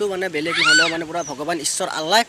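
A man's voice talking, with a brief high-pitched call that rises and falls about half a second in.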